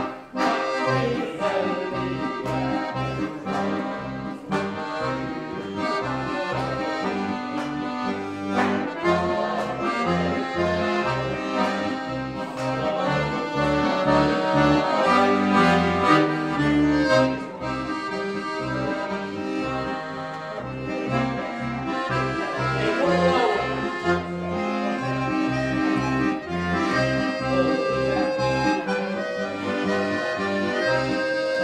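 Chromatic button accordion played solo: a melody in the treble over regular, steadily repeating bass notes.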